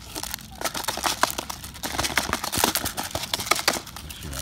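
Mute swan feeding from a plastic tub of seeds: rapid, irregular clicking and rattling as its bill scoops the seeds against the plastic.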